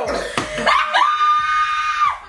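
A woman's high-pitched scream that rises quickly and is held steady for over a second, after a moment of excited voices.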